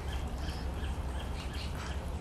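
Small birds chirping, many short calls a second, over a steady low rumble.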